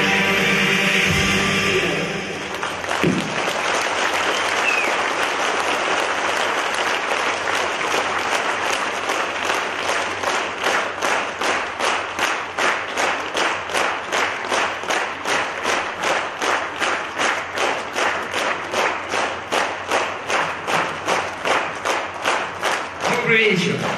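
A live band number ends about two seconds in, and the audience applauds. The applause turns into rhythmic clapping in unison, about two claps a second.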